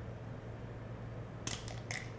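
A couple of quick sharp clicks about one and a half seconds in, from a micropipette's tip ejector pushing off the plastic tip, over a steady low hum.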